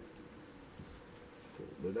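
Faint steady buzzing hum in a quiet room.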